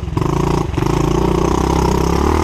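Pit bike's small single-cylinder engine running under throttle while being ridden, its note dipping briefly twice in the first second.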